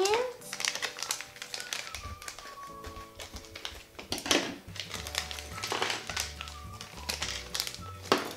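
Background music with a bass line, over the crinkling of a plastic blind-bag wrapper being cut open with scissors and pulled apart, with a few sharp crackles standing out.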